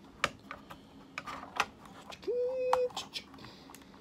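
Hard plastic toy parts clicking and snapping as a toy trailer is handled, with a brief held hum from a man a little past halfway.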